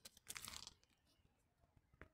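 Dry grass crackling and rustling in a brief burst just after the start, as the stalk is shaken and the cat scrambles through the grass, then quiet.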